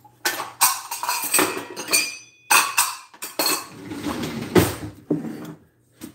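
Kitchen dishes and utensils being handled: a string of clinks and knocks, with one brief ringing clink about two seconds in.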